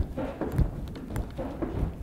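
Feet stepping quickly up and down on an aerobic step platform in a fast step drill: a run of dull thuds about two a second.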